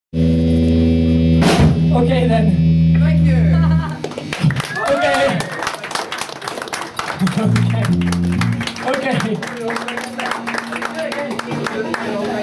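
Live rock band's electric guitar and bass holding a loud chord, with a cymbal or drum hit about a second and a half in. The chord cuts off just under four seconds in. After that come voices over a steady amplifier hum, scattered clicks and a short bass note.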